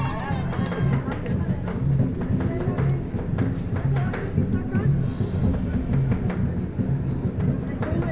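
Parade band music with a steady low beat and drums, heard over crowd chatter and voices.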